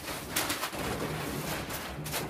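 A scraper working on a steel roller shutter, taking off old couplet paper in short scraping strokes: one about half a second in and another near the end. A pigeon coos low in the background.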